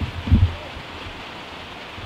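Low thumps and rustling as someone leans into a plastic dog house and brushes against it, two heavier knocks within the first half second, then a steady hiss.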